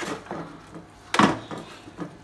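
Kitchenware being handled on the counter: one short, sharp knock a little over a second in, with lighter clicks at the start and end.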